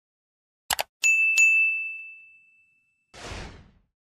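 Subscribe-button animation sound effects: a quick double mouse click, then a bright notification-bell ding struck twice that rings down over about a second and a half, and a short whoosh near the end.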